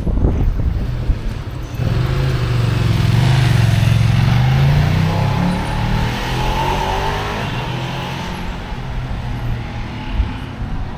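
A road vehicle passing close by: its engine grows louder over the first few seconds, is loudest around the middle, then fades again over steady street traffic noise.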